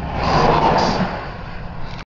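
Rush of a large tractor-trailer passing close by in the opposite lane, a swell of road and wind noise that peaks about half a second in and then fades. It is heard from inside a moving car, over the car's own low road rumble.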